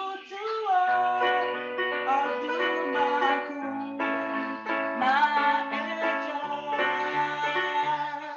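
Electronic keyboard playing sustained chords over low bass notes, with a melody line on top, the notes changing about every half second to a second; a demonstration of the D major chords just announced.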